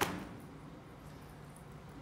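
A single sharp click right at the start with a brief ring after it, then the steady low hum of a hall's room tone.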